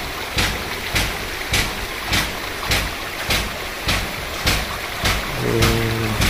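Footsteps at a steady walking pace, about one every 0.6 seconds, over a steady rush of flowing spring water in a concrete channel.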